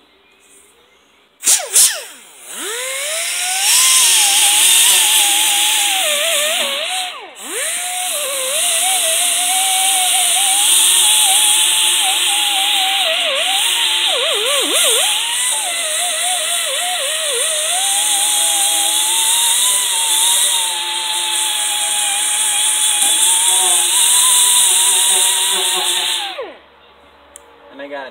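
Pneumatic die grinder grinding rust off the steel deck of a brush hog. It starts about a second and a half in and runs for about 25 seconds, with a high whine whose pitch dips and wavers as the bit bites and eases, over a steady hiss of exhaust air. It stops shortly before the end.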